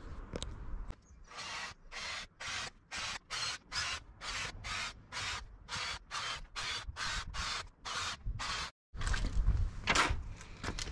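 Cordless drill with a combined hole cutter and countersink bit boring holes through thin wooden bed slats, in a quick regular run of short bursts about two a second.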